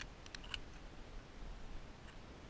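Faint steady outdoor hiss with a quick cluster of three or four brief high-pitched clicks about half a second in.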